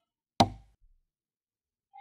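A single short knock about half a second in, with a brief low tail, then quiet.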